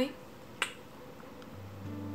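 A single sharp click about half a second in, over quiet room tone; soft music with low, held notes fades in near the end.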